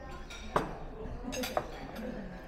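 Tableware clinking: a sharp clink about half a second in and another about a second later, over faint voices in the background.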